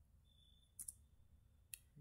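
Two faint clicks of computer keys being pressed, about a second apart, over near silence; one is the keystroke that runs a typed terminal command.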